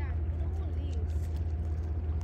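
Steady low rumble of an electric trolley car running along its track, heard from onboard, with faint voices in the background.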